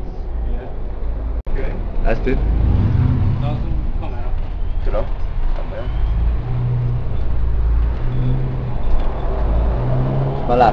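Diesel engine of a London double-decker bus heard from on board, a low drone that swells and eases as the bus moves off and drives on, with passengers' voices over it.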